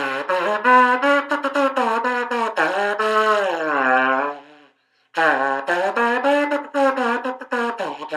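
Handmade ceramic trumpet, a wheel-thrown clay horn with no finger holes, blown with buzzing lips. It plays two phrases of short, separate notes with a wavering pitch, and a brief break about halfway through.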